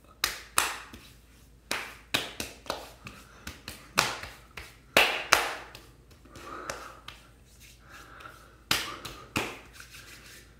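Open hands slapping and patting a freshly shaved face wet with alcohol aftershave: a quick, irregular run of sharp smacks, with a quieter lull of a couple of seconds before a last few slaps near the end.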